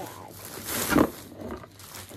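Plastic shopping bag rustling as a boxed item is pulled out of it, building to one loud rush about a second in.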